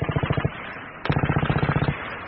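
Two rapid bursts of machine-gun fire, a radio-drama sound effect; the second burst starts about a second in.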